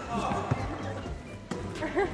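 Two sharp thuds of a ball hitting a sports-hall floor, about half a second and a second and a half in, under faint indistinct voices and background music.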